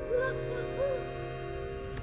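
Background music with steady held tones and a few short hooting notes that rise and fall in pitch during the first second.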